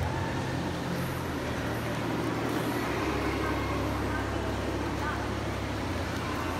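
Indoor ice rink ambience: a steady low rumble with indistinct voices from the crowd.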